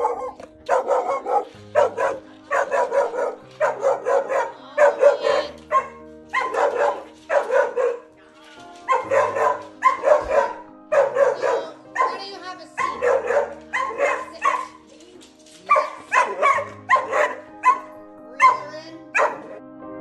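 A young mixed-breed dog barking repeatedly in clusters of sharp barks with short pauses between them: the reactive barking of a fear-reactive dog. Soft piano music plays underneath.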